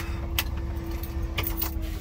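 Peterbilt 389 diesel engine idling, heard from inside the cab as a steady low rumble with a faint steady hum, and a few short light clicks over it.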